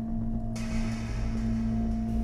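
Ambient drone of a film score: a steady low hum with a held tone above it. A soft hiss joins abruptly about half a second in.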